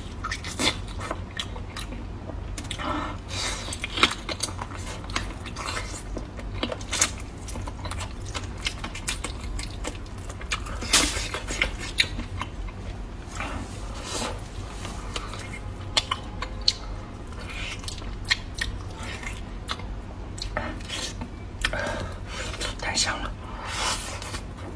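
Close-up chewing and smacking of braised pork trotter: irregular wet mouth clicks and smacks, with a few louder ones scattered through.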